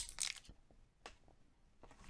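Foil booster-pack wrapper crinkling briefly in the first half second, then faint soft taps and rustles as the trading cards are slid out and handled.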